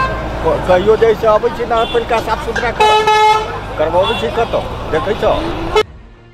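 A vehicle horn honks twice over street traffic rumble: a short toot right at the start and a longer, louder one about three seconds in.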